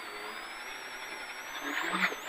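Golf Mk2 rally car's engine pulling away from the stage start in first gear, with a thin high whine rising in pitch. It grows louder near the end as the revs build.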